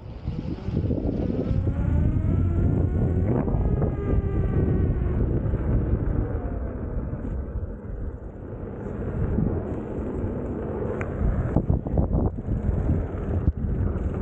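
Veteran Lynx electric unicycle being ridden: heavy wind rumble on the microphone, with the hub motor's whine rising in pitch over the first few seconds and falling away again about six seconds in. A few knocks come near the end.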